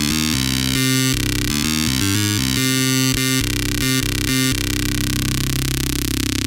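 Xfer Serum software synthesizer playing a monophonic lead patch that Preset Hybridize randomly generated. It plays a quick run of short notes, then holds one note from about four and a half seconds in.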